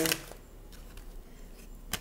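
A tarot card drawn from the deck and laid on a wooden table: faint soft ticks of card handling, then one sharp tap near the end as the card lands.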